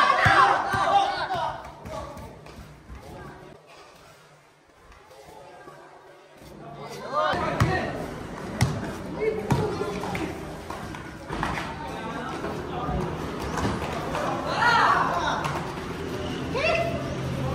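Players' voices calling out during a pickup basketball game, with a basketball bouncing sharply on a concrete floor several times in the second half. A quieter lull comes a few seconds in.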